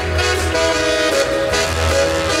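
Upbeat instrumental music with sustained horn-like notes over a recurring deep bass.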